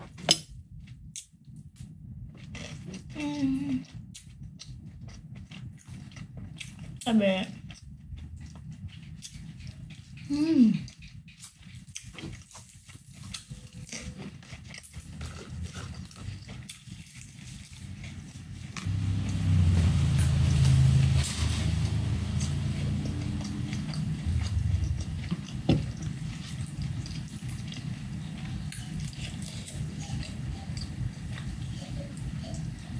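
A person eating by hand: chewing, lip-smacking and light clicks of food and fingers, with three short falling "mm" hums of enjoyment in the first half. From about two-thirds in, a louder, denser low noise takes over.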